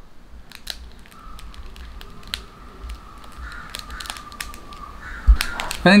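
A small motor turning the screw feeder of a 3D-printed powder dispenser, a faint steady whine, with scattered light ticks as sugar grains drop into a glass bowl. A thump comes a little after five seconds.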